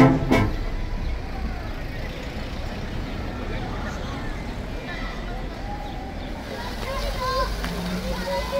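A wind band's brass chord breaks off about half a second in. After it comes open-air plaza ambience: scattered voices of passers-by over a steady low rumble, with a couple of voices nearer toward the end.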